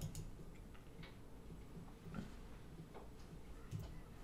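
Faint room tone with a few soft clicks, roughly a second apart.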